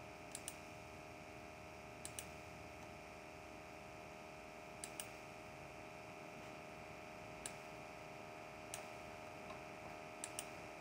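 Faint clicks of a computer mouse, several as quick double clicks, spaced every couple of seconds over a low steady electrical hum.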